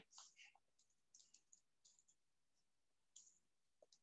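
Faint computer keyboard keystrokes: a handful of soft, scattered clicks in near silence as a short piece of code is typed.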